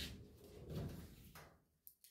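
Faint handling sounds of a 1963 Impala's steel door being swung open on its hinges: a low rustle with a few soft knocks.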